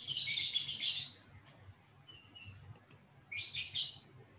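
Birds chirping in two rapid, high-pitched bursts, one about a second long at the start and a shorter one near the end, with a faint short whistled note between them.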